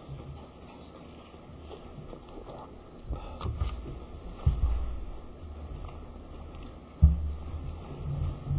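Low room rumble with a few dull thumps, the sharpest and loudest about seven seconds in.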